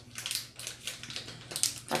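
Crinkling and rustling of a small jewelry packet handled and worked open by hand, in a run of irregular crackles.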